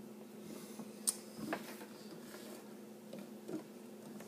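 A few light clicks and knocks of a glass and a beer can being handled on a table, the sharpest about a second in, over a faint steady hum.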